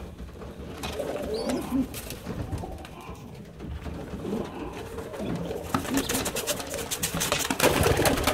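Domestic pigeons cooing, low and wavering. A run of rustling clicks comes in the last couple of seconds.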